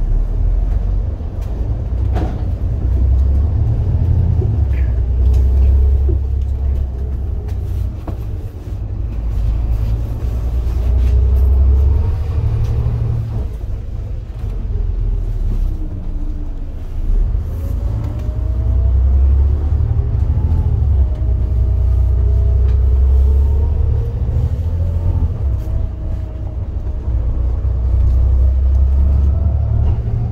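Volvo B7TL double-decker bus's six-cylinder diesel engine and transmission heard from inside on the top deck: a deep rumble with a whine that drops as the bus slows around the middle, then climbs again as it pulls away and picks up speed.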